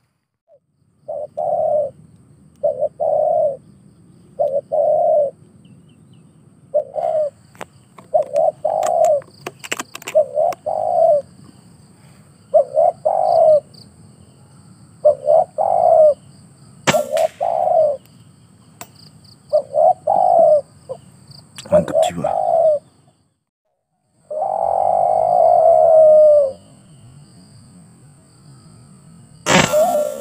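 Doves cooing: a long run of short coos in quick groups, repeating every second or two, ending in one longer coo that falls in pitch.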